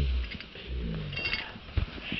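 A greyhound grunting as it rolls on its back in snow, its sounds slowed down with the slow-motion footage into low, drawn-out tones. Two of them, one at the start and one about three quarters of a second in, with a short knock near the end.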